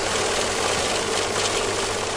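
A steady whirring, rattling machine-like sound effect, even in level throughout.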